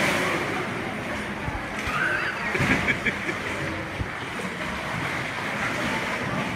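Seawater sloshing and washing along the hull of a small tour boat moving through a sea cave, heard as a steady rushing noise with wind on the microphone. Brief voices come through about two to three seconds in.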